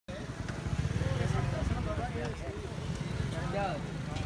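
Men's voices talking over a low, rapid rumble that is strongest in the first half and eases off later.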